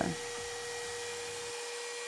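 A steady electrical hum, a low tone with a fainter high one above it, over a faint hiss. Nothing in the scene is making a sound.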